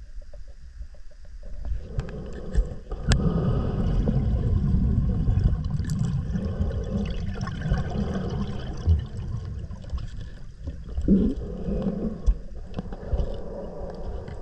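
Muffled underwater noise around a cave diver swimming on a closed-circuit rebreather: a low gurgling rumble that grows louder about three seconds in, with a few sharp clicks.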